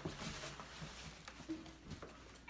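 Faint rustling of plastic wrapping with light knocks and ticks as an acoustic guitar is pulled out of its cardboard box.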